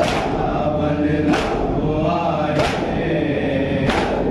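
A group of men chanting a noha, a Shia mourning lament, with unison chest-beating (matam) marking the beat: a sharp slap about every 1.3 seconds, four in all.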